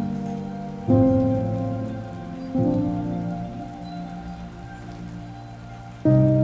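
Steady rain falling, under background music whose low sustained chords are struck about a second in and again about two and a half seconds in, each slowly fading.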